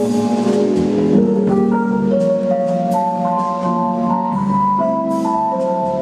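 Live small jazz group playing: a melody of held notes moving step by step over a drum kit with repeated cymbal strikes and a double bass line.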